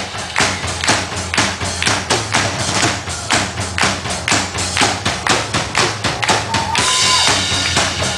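Live rock drum kit playing a steady driving beat, sharp drum hits about four a second, with a held tone coming in near the end.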